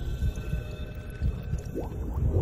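Cinematic countdown-intro sound design: a deep pulsing rumble under thin steady high tones that fade out midway, with a short rising tone near the end.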